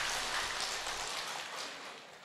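Audience applause fading away near the end.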